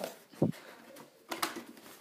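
Handling sounds as a cardboard LEGO set box is picked up: a short soft bump about a quarter of the way in, then a brief rustle and scrape of cardboard a little past halfway.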